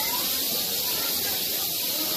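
Rattlesnakes rattling: a steady, high-pitched buzzing hiss that runs on without a break.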